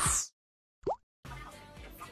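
Editing sound effects on a video end card: the background music stops with a short high swish, a single quick rising 'bloop' sounds about a second in, and a quiet outro jingle then begins.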